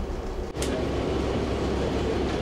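Steady cabin noise inside a city transit bus: a low engine rumble under a dense road-and-interior noise. It changes abruptly about half a second in.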